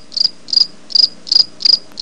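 Stock cricket-chirping sound effect edited in: short, high chirps repeating about three times a second, cutting in and out abruptly. It is the usual comic sign of an awkward silence.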